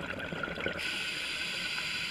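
Underwater scuba breathing through a regulator: bubbly gurgling of exhaled air, then less than a second in, a sudden steady hiss.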